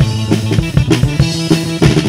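Rock music from a recorded band: a drum kit keeping a steady beat under electric guitar and bass.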